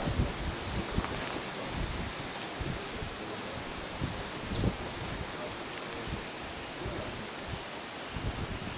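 Outdoor wind: a steady hiss with irregular low gusts buffeting the microphone.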